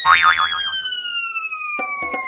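Cartoon falling sound effect: a long whistle-like tone sliding steadily down in pitch, with a wobbling springy boing in the first half-second and a few light knocks near the end as the character lands.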